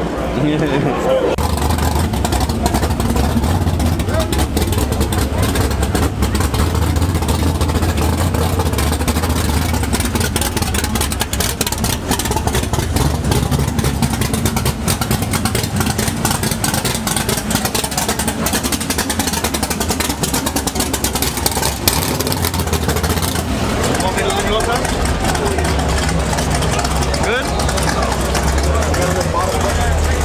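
A Chevrolet Malibu drag car's engine running at idle, loud and steady, with crowd voices around it.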